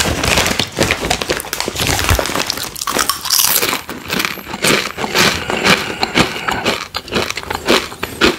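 A Takis tortilla-chip bag crinkling as it is lifted and handled: a dense run of sharp crinkles and crackles.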